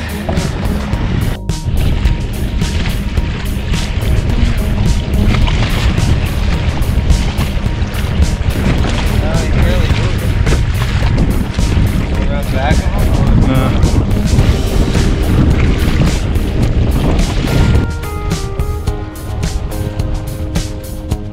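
Wind buffeting the microphone and water splashing along the hull of a kayak under way on choppy water. Music plays underneath, its steady notes clearer near the end.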